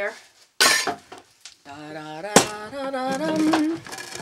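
Dishes and kitchen items clattering as a cluttered counter is cleared: a short noisy clatter about half a second in and a sharp clink near the middle, with a woman's wordless voice over it.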